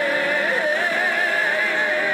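Male gospel soloist singing, holding one long note with a slow vibrato.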